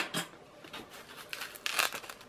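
Polystyrene packaging being cut open with a small knife and pulled apart. There is a sharp click at the start and another just after, then scraping and crinkling that grows louder near the end.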